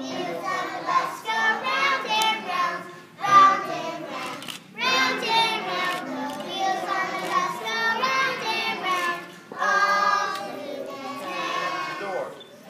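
A group of preschool children singing a song together on stage, in short phrases with brief breaths between them.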